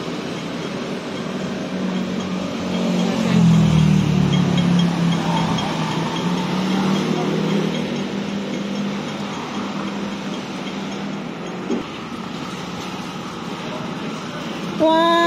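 City street traffic passing a crossing: a vehicle's low engine hum swells about three seconds in and fades away over the next several seconds, over a steady rush of traffic noise.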